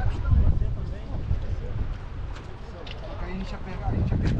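Wind rumbling on the microphone over water sounds around a six-seat outrigger canoe under paddle, with a few short splashes and indistinct voices of the crew.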